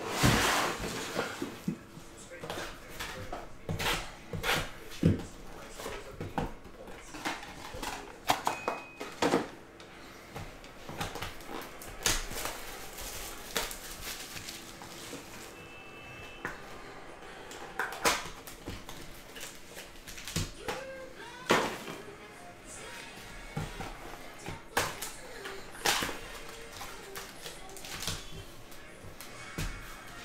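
Handling of a cardboard trading-card hobby box and its foil packs: irregular crinkles, taps and clicks as the box is tipped open and the packs are pulled out and stacked on the table, over faint background music.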